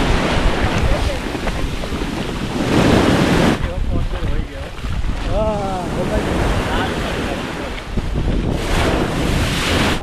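Foamy surf washing up the sand and over a camera held low at the shoreline, with wind rushing on the microphone; the wash swells loud near the start, around three seconds in and again near the end.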